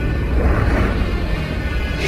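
Film soundtrack: dramatic orchestral score over a heavy low rumble of explosions and destruction.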